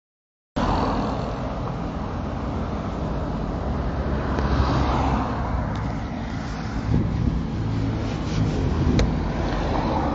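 Road traffic noise on a city street: cars and a motorbike driving past, a steady low rumble that cuts in suddenly about half a second in.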